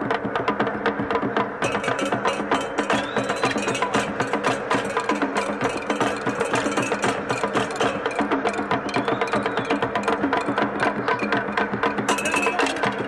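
Traditional Cameroonian percussion music: a fast, dense rhythm of drum and hand-percussion strikes over a few steady low tones, running on without a break.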